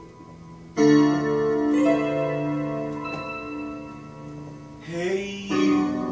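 Digital piano playing an instrumental passage: faint fading notes, then a loud chord struck about a second in and held as it shifts, with a new chord near the end.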